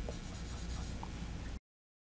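Dry-erase marker faintly scratching on a whiteboard as a small box is drawn, over low room hum. The sound cuts off suddenly to silence about a second and a half in.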